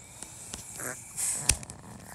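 Small screwdriver turning the screw on a plastic battery cover: faint scraping with small clicks, and one sharp click about a second and a half in.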